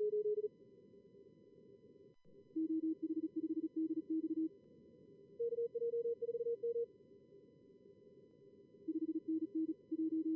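Fast Morse code (CW) at around 38 words per minute from SkookumLogger's practice-mode simulator, in four short runs that alternate between a higher and a lower pitch, over a steady low hiss of simulated receiver noise.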